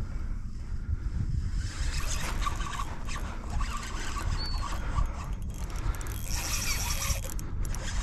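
Drag of a Shimano Ci4+ 1000 spinning reel buzzing as a hooked fish pulls line off, strongest over the last two seconds. Wind buffets the microphone throughout.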